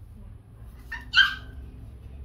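A dog giving two short, high-pitched yips about a second in, the second much louder than the first.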